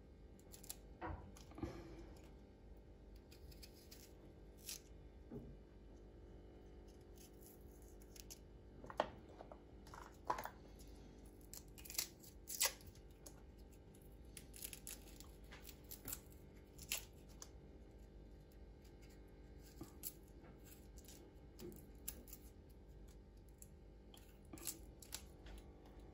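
Faint, irregular clicks and scrapes of a small kitchen knife against garlic cloves and a wooden cutting board while the cloves are peeled and their centres cut out, over a faint steady hum.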